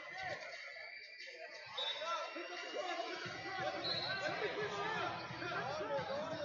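Overlapping voices of coaches and spectators calling out across a large hall, with a couple of brief high squeaks and some dull thumps in the background.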